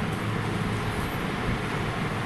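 Steady low rumble and hiss of background noise, with no distinct event.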